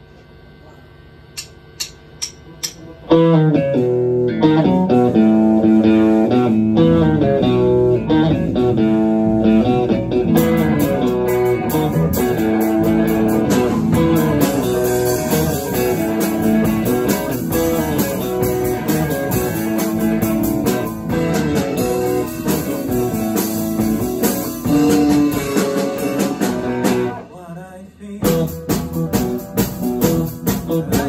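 Four short clicks about half a second apart, a count-in, then a live rock band with electric guitars, bass, drums and keyboard starts a song, the electric guitar leading. The band stops briefly near the end and comes straight back in.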